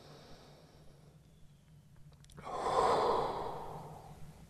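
A man's single long, audible breath, starting suddenly a little over two seconds in and fading slowly, taken while holding a yoga stretch.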